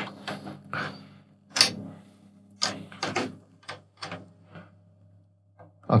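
Snare drum tension rods being finger-tightened by hand, one lug after another: a string of irregular light metallic clicks and knocks that thins out and stops after about four and a half seconds.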